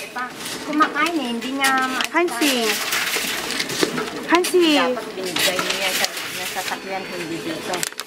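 People talking, with a child's high voice among them, in short phrases through the whole stretch, over a faint steady hum.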